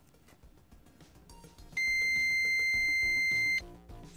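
Multimeter continuity beep: one steady, high tone lasting just under two seconds, starting a little before the middle, as the probes bridge a small glass cartridge fuse. The beep shows the fuse is intact.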